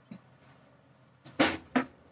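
Two short, sharp knocks about a third of a second apart, the first the louder, over quiet kitchen room tone: sounds of handling on the kitchen counter.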